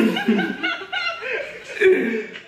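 People laughing and chuckling in short bursts, with the loudest burst near the end.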